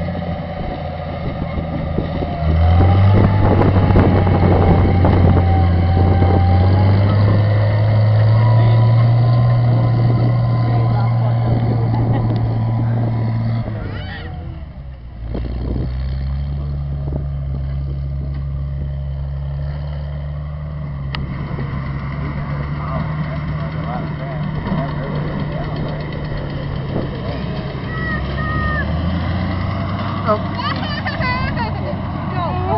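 Farm tractor engine running steadily while working a corn picker through the field. It is louder with a thin whine for about ten seconds from a few seconds in, drops away briefly around the middle, then runs steady again.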